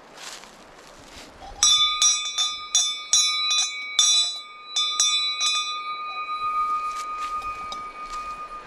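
Brass bear bell on a trailside post, rung by pulling its cord: about ten quick, uneven clangs over some four seconds, starting a little over a second in, then one clear tone dying away slowly. A bear bell is rung to warn bears that people are on the trail.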